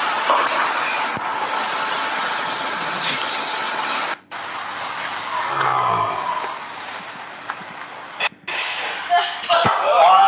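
A steady hiss for about four seconds, then a person's frustrated sigh about halfway through. Near the end a man's voice begins.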